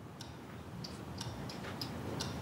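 Faint, light ticks, six or so at uneven intervals, over a low steady background hum.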